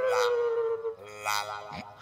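Exaggerated comic snoring: a long whistling tone that slides slowly down in pitch, with hissing breaths about a second apart.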